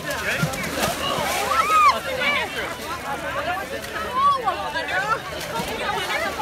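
Many people's voices overlapping, talking and calling out at once, with water sloshing as people wade through a pool of muddy water.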